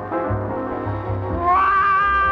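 Swing-era jazz recording with scat singing and a band. A bass line pulses underneath, and about one and a half seconds in a high note slides up and is held.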